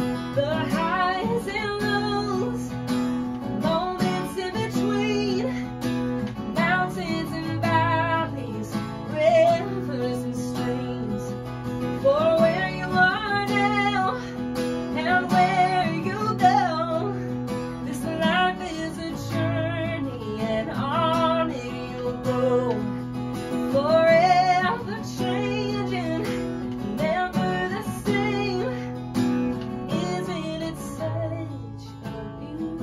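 A young woman singing, accompanying herself on a strummed acoustic guitar, in sung phrases with vibrato over steady chords.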